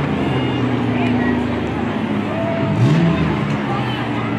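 Demolition derby car engines running, one revving up about three seconds in, with voices in the background.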